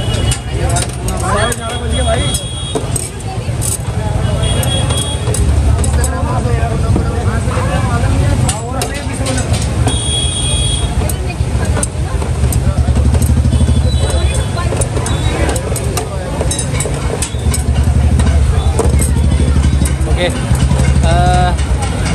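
Busy street-food market hubbub: many voices talking over a low engine rumble from traffic that swells and fades, with scattered short clicks.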